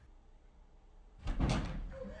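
A short burst of knocks and thumps with a deep low thud, about a second in, lasting about half a second.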